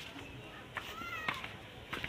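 A cat meowing once, a short bending call about a second in, over a few footstep scuffs on concrete steps.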